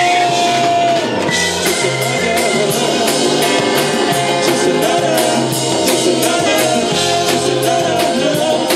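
Live jazz-funk band playing: a pulsing bass line and drum kit with steady, evenly spaced cymbal strokes under held keyboard notes.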